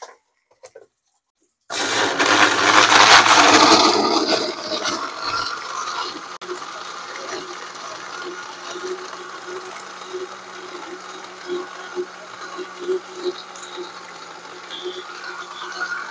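Countertop blender starting up about two seconds in, blending an avocado smoothie. It is loudest for the first couple of seconds while it breaks up the chunks, then settles into a steadier, lower running sound as the mix smooths out.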